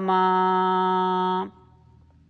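The last note of a devotional Rama bhajan, held at a steady pitch. It cuts off about one and a half seconds in, leaving faint room noise.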